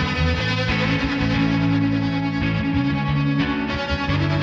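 Electric guitar played through a budget shoegaze pedalboard of fuzz, chorus-style modulation and reverb pedals, in long sustained chords that change about every second.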